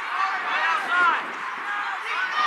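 Distant voices shouting and calling out on an open field, several short rising-and-falling calls, the loudest about a second in, over steady outdoor background noise.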